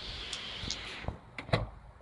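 Handling noise close to a phone microphone: a soft rustling hiss for about a second, then a few light clicks and taps.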